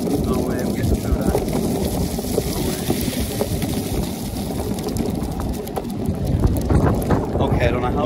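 Longboard wheels rolling fast over rough asphalt scattered with leaves: a steady, gritty rumble, with wind buffeting the microphone.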